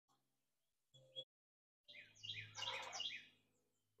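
A bird singing faintly: a quick run of three or four falling chirps, after a brief faint blip about a second in.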